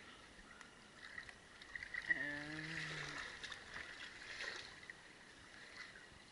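Quiet sloshing and lapping of water as a person wades through waist-deep water, with small splashes. About two seconds in, a person's voice gives a brief low hum lasting about a second.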